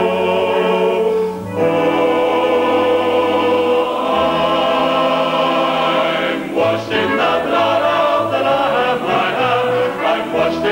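A man singing a Salvation Army hymn in long held notes, with a choir singing behind him. The singing breaks off briefly just over a second in and again about six and a half seconds in.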